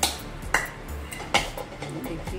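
Steel ladle clinking against metal cookware as masala is spooned out: three sharp metallic clinks, at the start, about half a second in and near the middle.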